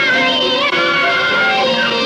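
Khmer lkhon basak (Bassac opera) music: singing over instrumental accompaniment, with held notes that slide and bend in pitch.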